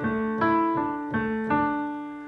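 Digital piano playing a slow Dsus2 arpeggio, a new note about every third of a second. The left-hand notes are held down so they ring on under the right-hand notes, and the sound fades toward the end.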